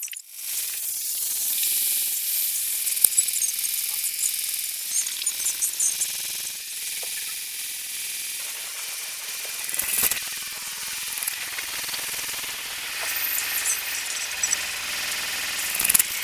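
Steady high-pitched hiss with scattered sharp clicks.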